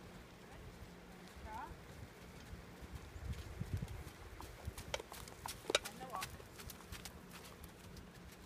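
A horse's hooves beating on gravel footing as it trots around on a long line, with soft thuds heaviest about three to four seconds in. A few sharp clicks come around five to six seconds in, the loudest sounds here.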